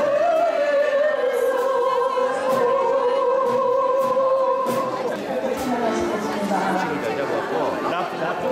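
Accordions playing with singing voices, ending on a long held chord that stops about five seconds in. After that, voices over quieter music.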